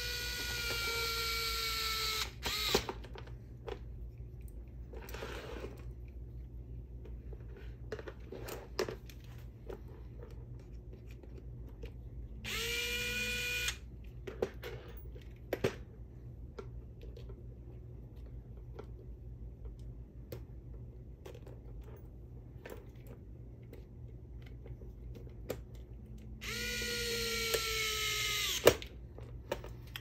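Small electric screwdriver running in three short bursts, one at the start, one about halfway and one near the end, driving screws into RC crawler suspension links. Each burst is a steady whine that winds down in pitch as the motor stops. Light clicks of small parts being handled come in between.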